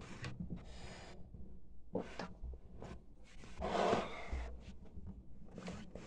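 A person's breathing close to the microphone, with one noisy breath about four seconds in and faint handling noises around it.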